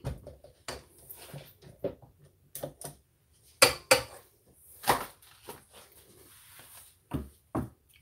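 Spatula scraping thick cream cheese filling off a mixer paddle and tapping against a stainless steel mixing bowl: a scatter of irregular taps and scrapes, with a few louder knocks about halfway through.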